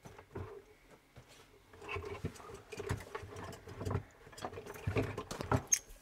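Irregular clicks, taps and rustles of hand tools and stiff electrical cable being handled at an open consumer unit, sparse at first and busier from about two seconds in.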